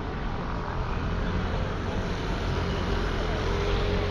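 Traffic on a rain-wet city street: a steady low engine rumble over the hiss of tyres on the wet road, with passers-by talking.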